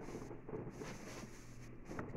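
Faint handling and rustling sounds from someone reaching for items at a table, over a steady low electrical hum.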